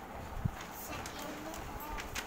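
Rustling and crinkling of a large glossy decorative paper sheet being lifted and handled, with scattered small clicks and one soft knock about half a second in. Faint voices can be heard underneath.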